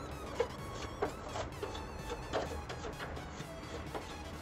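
Background music over a toothbrush scrubbing the aluminium fins of a split AC's indoor evaporator coil, a series of short, irregular brush strokes.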